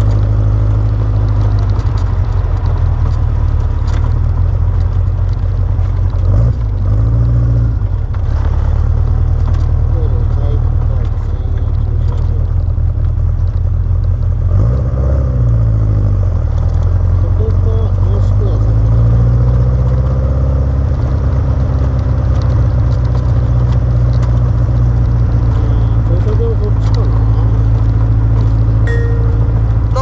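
Birkin Seven open sports car's engine running at low road speed, heard from the open cockpit, its note rising and falling a few times with the throttle, about 7 s, 15 s and 19 s in.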